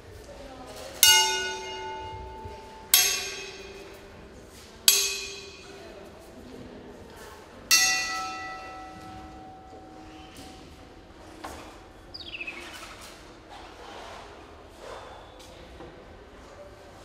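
A metal object is struck four times, each strike ringing out like a bell and dying away over a second or two, with the ring carried by the hall's echo. Later come a few lighter knocks and a short, falling, high squeak.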